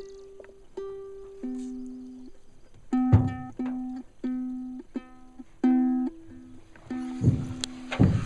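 Ukulele plucked in a slow, simple tune of single notes and chords, each ringing out and fading before the next. There are two dull thumps, one about three seconds in and one near the end.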